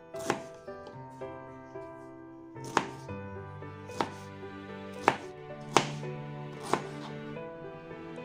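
Kitchen knife chopping pineapple on a plastic cutting board: about six sharp knocks of the blade hitting the board, unevenly spaced. Background music plays underneath.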